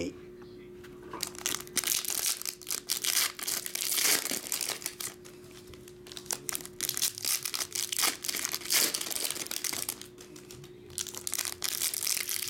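Foil trading-card pack wrappers crinkling and tearing as they are handled and opened, in a dense run of irregular crackles that pauses briefly near the end.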